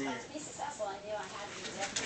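Quiet, indistinct men's voices talking, too low for words to be picked out.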